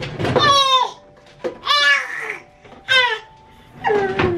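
A nine-month-old baby's voice: three short high-pitched vocal calls, each falling in pitch. The first is the longest, at the start, and the last is the shortest, about three seconds in.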